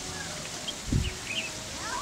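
Faint outdoor background in a pause between speech, with a few short, faint bird chirps about halfway through.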